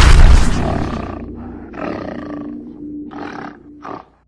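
Animated logo sting with animal-roar sound effects. A loud hit fades away in the first second, then about four short roars and grunts sound over a held low music tone, and the sound cuts off abruptly at the end.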